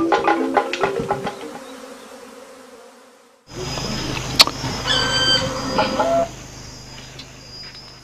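Hand-drum and wood-block percussion music fading out over the first two seconds, then a short gap. Then a steady low hum and a faint high tone, with one sharp click and a few short high chirps, dropping quieter near the end.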